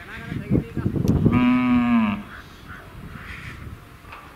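A Hallikar bull mooing once, a single call about a second long that drops in pitch as it ends.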